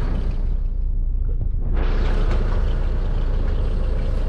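Crawler excavator's diesel engine idling steadily, a constant low hum with no change in speed.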